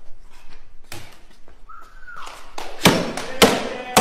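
Heavy chopping blade striking a wooden board: a few sharp chops, the two loudest about three seconds in and half a second apart, and a last one right at the end as the board splits apart.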